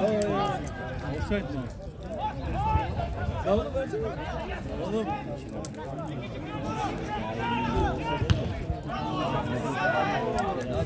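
Several men talking and calling out at once near the microphone, as pitch-side chatter during a football match, with a single sharp thump about eight seconds in.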